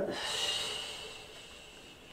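A woman's long, breathy exhale, strongest at first and fading away over about a second and a half.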